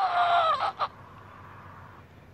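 The end of a long, drawn-out human cry, one held note that slides down in pitch and breaks off under a second in. A short low hiss follows.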